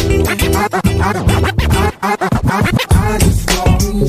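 Hip hop music mix with turntable scratching over a steady beat: quick pitch swoops, up and down, one after another.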